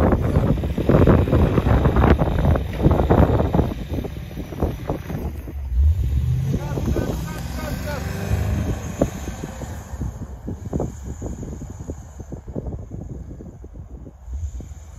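Off-road SUV engines revving under load as one 4x4 tows another out of deep snow on a tow strap, the engine note rising about halfway through, with wind buffeting the microphone.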